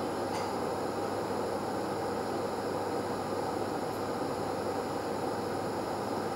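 Steady room noise, an even hiss with a low hum underneath, typical of ventilation or equipment fans running in a meeting room. A faint click comes just after the start.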